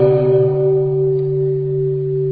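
A sustained, steady ringing tone from the chant's musical accompaniment, like a singing bowl: a low pitch with a higher one held over it. It cuts off abruptly just before the chanting resumes.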